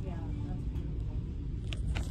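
Store ambience: a steady low rumble with faint background voices, and a sharp light click near the end.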